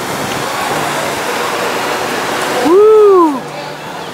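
Steady rushing noise of wind and sea, with one loud, short call that rises and falls in pitch about three-quarters of the way through.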